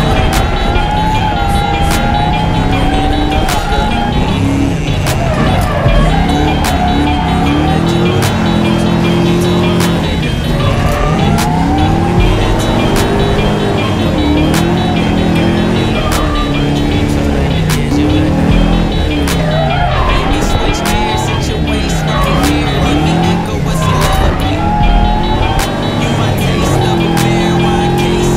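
Nissan S13 drift car from inside the cockpit, its engine revving up and down again and again through the drift, with tyres squealing. Music plays over it.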